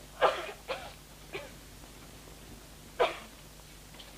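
A girl coughing in short bursts: three coughs close together in the first second and a half, then one more about three seconds in. The coughing is that of a girl who is seriously ill.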